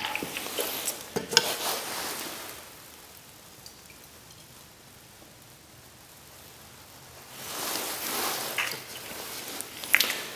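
Alcohol poured from a small plastic measuring cup into small metal alcohol stoves: a soft trickling hiss over the first couple of seconds and again from about seven seconds in, with a few light clicks of cup and metal.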